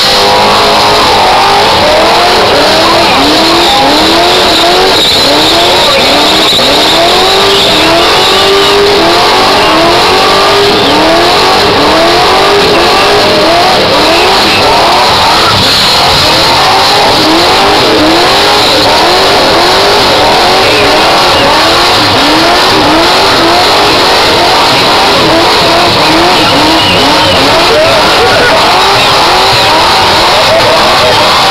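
Stroker small-block V8 of a Valiant VG hardtop held at high revs through a burnout, its pitch swelling up and down over and over about once a second. Under it, the spinning rear tyres squeal and hiss on the track. Very loud throughout.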